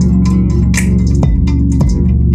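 An R&B beat in progress playing back from FL Studio: a guitar part over a deep sustained bass, with a few sharp percussion hits.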